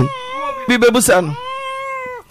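Newborn baby crying: long, steady, high-pitched wails, one early on and another from about one and a half seconds that trails off at the end, with an adult voice talking between them.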